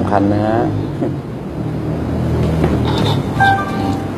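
A steady low machine hum, with a short high steady tone sounding briefly near the end.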